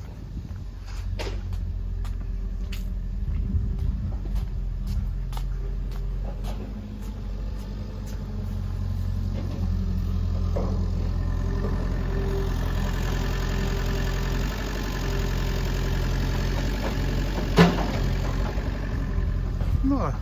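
A digging tractor's diesel engine runs steadily, a continuous low drone. About twelve seconds in its sound grows harsher, and there is a single sharp knock near the end.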